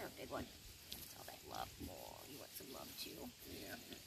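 Piglets giving a run of short, low grunts.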